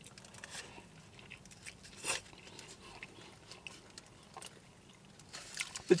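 A person biting into a burrito and chewing it close to the microphone: soft wet chewing with small crunches and mouth clicks, the loudest crunch about two seconds in.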